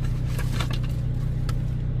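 Steady low hum of a parked car idling with its air conditioning running on high, with a few light rustles and crinkles as fabric decorations and their paper tags are handled.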